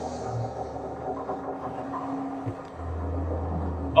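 Low steady rumble of a wooden sailing ship's hull creaking at sea, from a TV drama's sound design, with a faint held tone over it. A deeper rumble swells up about three seconds in.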